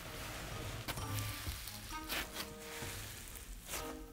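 Sand puff slime pressed and folded by hand, giving faint crackly sizzles, under quiet background music.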